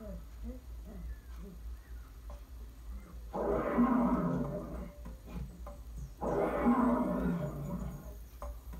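Lion roaring twice, each roar about a second and a half long and rough, the second coming about three seconds after the first. The roar is dubbed onto a lion hand puppet.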